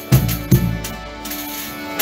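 Folia de Reis band playing an instrumental passage: strummed violas and other stringed instruments over a steady chord, with two bass-drum beats in quick succession early on and another at the end, each with tambourine jingles.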